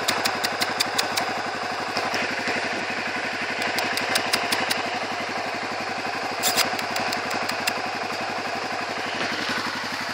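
An engine idling steadily throughout, with runs of sharp clicks over it at the start, around four seconds in and again at about six and a half seconds.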